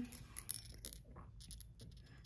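Small ceramic Santa bells clinking against each other and against the inside of a copper pot as one is picked out: a few light, scattered clicks and knocks.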